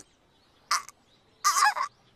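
Crow cawing twice in an otherwise silent pause: a short caw about two-thirds of a second in, then a longer one about halfway through. It is the stock anime sound effect for an awkward silence.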